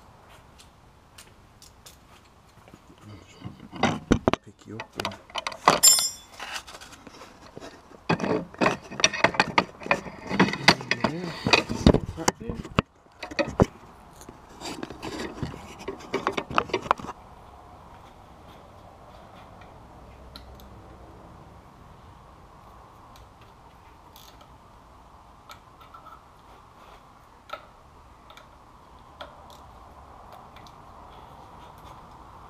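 Metal tools and parts clattering and rattling as they are handled, in irregular bursts for about the first half, then a faint steady hum with a few light ticks.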